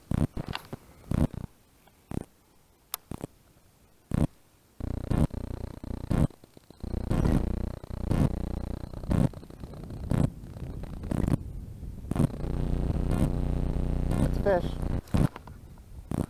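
Baitcasting reel being cranked in: a steady whirring purr of the reel's gears from about five seconds in. Before it come a few sharp clicks and knocks.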